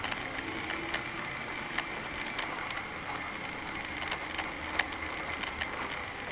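Electric wheelchair's drive motors running with a steady high whine as it moves along a hard corridor floor, with scattered light clicks and knocks.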